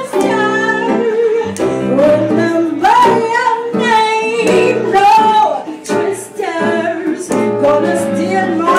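A woman singing a blues song live into a microphone, with sliding, held notes, backed by electric guitar.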